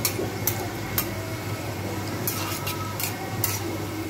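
Oil sizzling steadily around fritters deep-frying in an aluminium kadai, with a metal spatula clicking against the pan several times as they are stirred.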